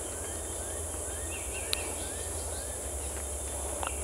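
Forest ambience: a steady high-pitched drone of insects, with a short arched call note repeated a little more than twice a second and one faint click.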